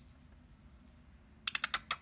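Hands handling a plastic squeeze tube of face primer: a quick run of sharp clicks in the last half second, over a faint low hum.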